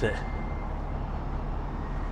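Steady low mechanical hum of an idling engine, unchanging throughout, with a faint thin whine above it that fades out partway through.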